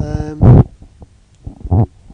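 A man's voice making wordless hesitation sounds close to the microphone: a held, drawn-out "uhh" at the start, a loud low blast about half a second in, and a short murmur near the end.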